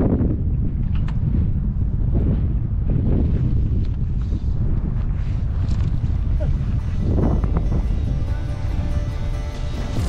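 Wind buffeting the microphone, a heavy low rumble throughout. Faint background music with steady held notes comes in near the end.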